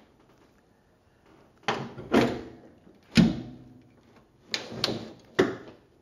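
A series of about six sharp metal clunks and bangs with a short ring after each, the loudest and deepest about three seconds in. These are the steel door and hood panels of a 1940 Ford being shut, unlatched and lifted.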